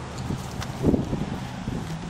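Wind buffeting the microphone as a low rumble, with a few dull thumps, the loudest about a second in.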